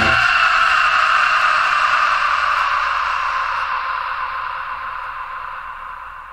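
A hiss-like noise left ringing after the band stops at the end of a heavy metal track, fading out slowly.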